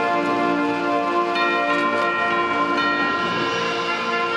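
Orchestral music with held brass chords that change every second or so.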